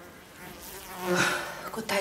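A woman's voice making a drawn-out, hummed or nasal vocal sound through the middle, then starting to speak near the end.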